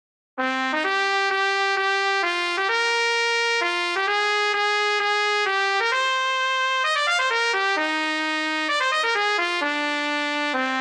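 Notation-software playback of a solo trumpet line: MuseScore 3's synthesized trumpet plays a lively melody of short, quick notes at 130 beats per minute, starting about half a second in. No other instrument plays under it.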